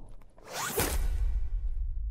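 Trailer whoosh sound effect: a fast rushing swish about half a second in, lasting about half a second, followed by a low bass rumble.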